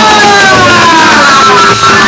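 Kagura accompaniment music: a bamboo flute holds a long note that slides slowly downward in pitch, over loud drums.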